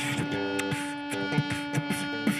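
Live music with a harmonica holding one long note over electric guitar, with sharp percussive clicks and thumps of vocal percussion into a handheld microphone.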